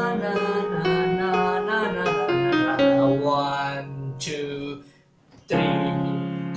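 Electronic keyboard playing the song's chorus melody in the right hand over a held E-flat minor chord in the left. The playing breaks off for about half a second near five seconds in, then a new held chord comes in.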